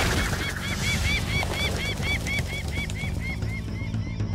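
A flock of cartoon birds calling in a fast run of short, repeated chirping calls, about five a second, fading away near the end, over background music with a low beat.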